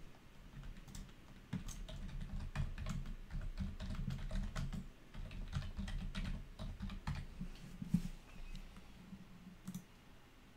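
Typing on a computer keyboard: a run of quick key presses, busiest from about a second and a half in to about eight seconds, then thinning out.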